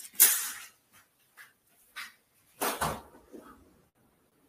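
A window being opened by hand: a rattle of the frame and latch just after the start, small knocks, then a louder clunk nearly three seconds in.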